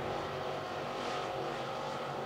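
Dirt late model race cars with 602 crate V8 engines running at speed around the track, a steady engine drone.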